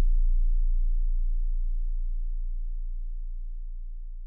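A single deep bass note from the hip-hop beat, held and slowly fading out as the song ends.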